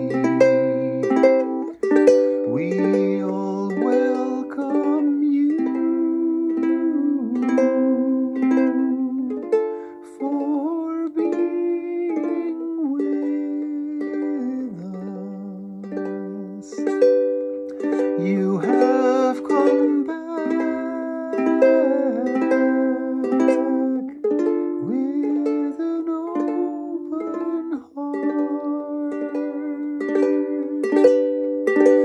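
A ukulele strummed in a steady rhythm, an instrumental passage of changing chords.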